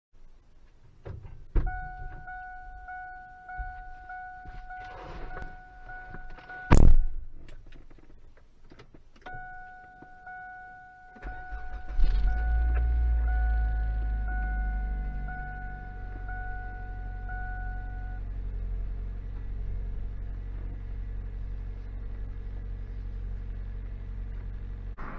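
Car warning chime pinging about twice a second, cut off by the door slamming shut, the loudest sound. The chime starts again, then the engine cranks, catches about halfway through and settles into a steady idle heard from inside the cabin. The chime carries on for several seconds over the idle, then stops.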